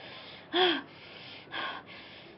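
A young woman sobbing, with gasping, voiced catches of breath about once a second. The stronger sob comes about half a second in and a weaker one follows a second later.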